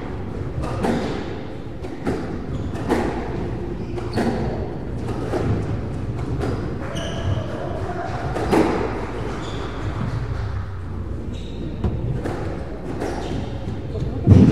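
Squash rally: the rubber ball is struck by rackets and hits the court walls, a sharp knock about once a second. Short high squeaks of court shoes on the wooden floor come in between.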